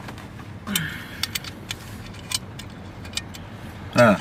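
Steady car-cabin hum from a moving car, with a scattering of small sharp clicks and taps as a passenger handles a small liquor bottle.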